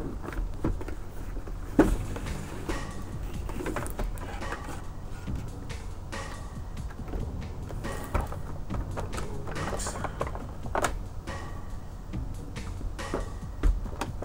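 Cardboard box and clear plastic packaging tray being handled and pulled apart: irregular crinkles, scrapes and clicks, with a sharper knock about two seconds in.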